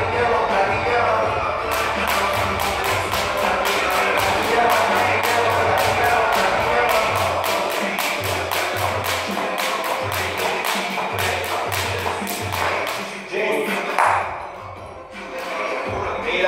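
A jump rope ticking against the floor in quick, even strokes during double-unders, over background music. The rope starts about two seconds in and stops a few seconds before the end.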